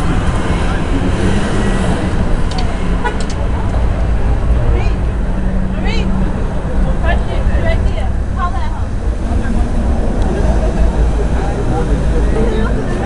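City street traffic: cars passing with a steady low rumble, under faint, indistinct voices of people close by.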